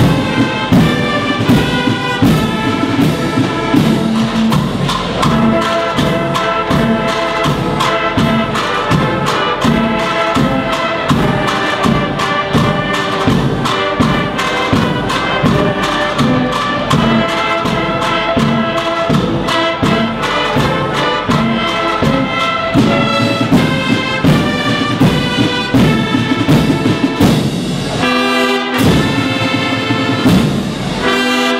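Spanish agrupación musical, a brass-and-percussion band, playing a march live: trumpets carry the melody in ensemble over a steady drum beat.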